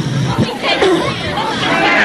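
Archival tape recording of a crowd at a meeting: several voices talking and calling out over one another.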